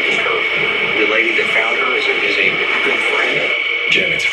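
Television audio picked up through the room: indistinct speech from the TV's speaker, with a steady high-pitched tone running under it.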